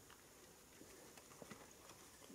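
Near silence: a faint steady hiss with a few scattered faint clicks.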